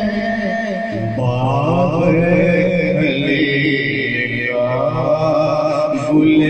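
A man's solo voice singing a naat, an Urdu devotional poem, into a microphone over a loudspeaker system, drawing out long held notes with a wavering, ornamented pitch. A new phrase begins about a second in and another near five seconds.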